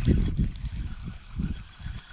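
Wind buffeting a microphone: an uneven low rumble that rises and falls in gusts.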